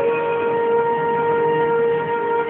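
Instrumental music: a single long note held at a steady pitch on a flute-like wind instrument.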